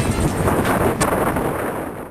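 Wind buffeting the microphone of a camera carried on a moving bicycle: a loud rushing roar, with a sharp click about a second in.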